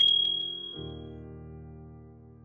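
A single bright ding, the notification-bell chime of an animated subscribe button, struck at the start and fading away over about a second, over soft background music.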